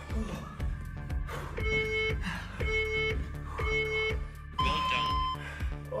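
Workout interval timer counting down over background music with a steady beat: three short beeps a second apart, then a longer, higher-pitched beep that marks the end of the final work interval.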